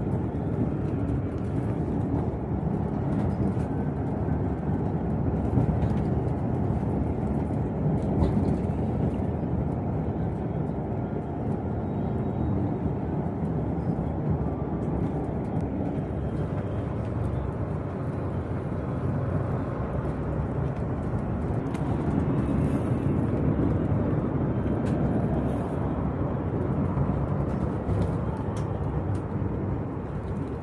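Steady low rumble of a vehicle's engine and tyres on the road, heard from inside the moving vehicle.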